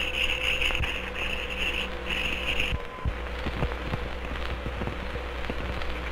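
Surface noise of an old optical film soundtrack: a steady hum and hiss with scattered crackling pops. A brighter, higher hiss stops abruptly a little under three seconds in.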